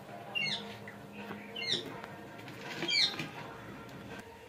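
A bird's short high-pitched call, falling in pitch, heard three times about a second and a quarter apart.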